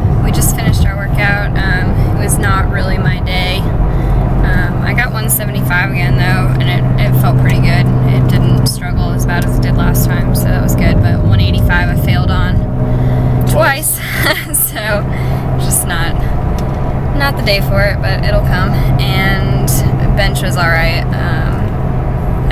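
A woman talking inside a moving car, over the steady low drone of engine and road noise in the cabin.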